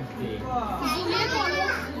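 Children's voices and talk as they play, with a high-pitched voice calling out, rising and falling, from about a second in.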